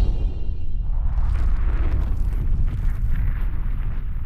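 Cinematic sound effect for an animated logo intro: a deep, sustained rumble with a crackling hiss over it, holding steady and beginning to fade near the end.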